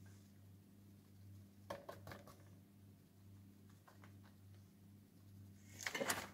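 Near silence: room tone with a low steady hum and a few faint clicks about two seconds in.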